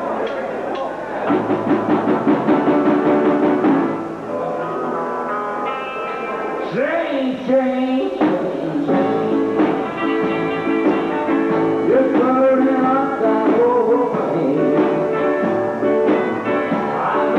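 A rockabilly band playing live: electric guitar and upright bass, with a voice singing at times.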